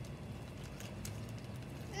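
Plastic bags rustling faintly as powder is poured from one bag into another, over a steady low rumble.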